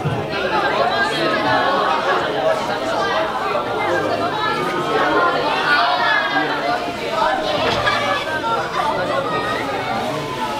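Overlapping chatter of several voices talking at once, with no single voice standing out.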